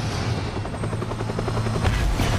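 Helicopter rotor chopping with rapid, evenly spaced beats over a low engine drone, ending in a sudden blast as the helicopter explodes.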